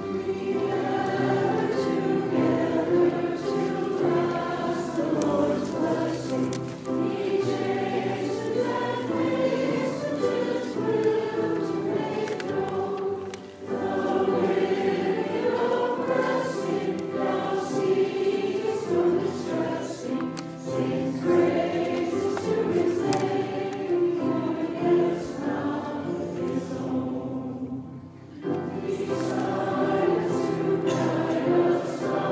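Small mixed church choir of men's and women's voices singing together, with short pauses between phrases about 13 seconds in and near the end.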